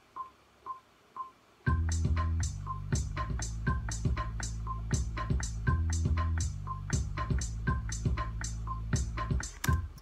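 A metronome count-in ticking twice a second, then a drum-machine beat with a deep synth bass line comes in about a second and a half in. Hi-hats from a TR-606 drum machine plug-in are played live over it in a steady ticking pattern, and the metronome clicks on through the beat.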